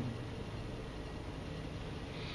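Steady low background hum with faint hiss, with no distinct sound event in it.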